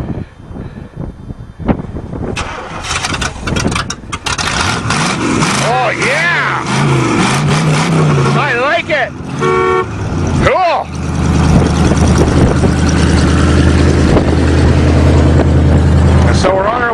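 An old Oldsmobile sedan engine with its exhaust cut open, its Y-pipe removed and its three pipes open. It turns over unevenly for several seconds, then catches about ten seconds in and runs loud and steady. A short car-horn toot sounds just before it catches.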